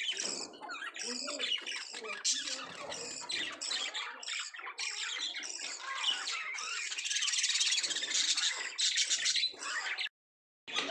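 A flock of budgerigars chattering and chirping nonstop, many high calls overlapping, growing busier about seven seconds in.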